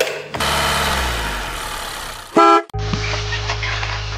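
Edited intro sound effects: a whooshing swell that fades over about two seconds, then a short, loud horn-like toot, then a steady low drone.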